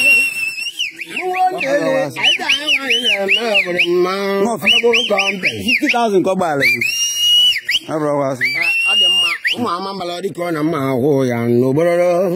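A high whistle over men's voices. Some notes are held for about a second, and between them come quick runs of up-and-down warbles, about four a second.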